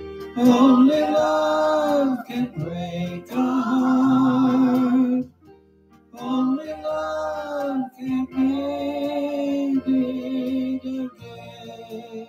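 A man singing a slow love song over a backing track, holding long notes in separate phrases, with a short break about five seconds in.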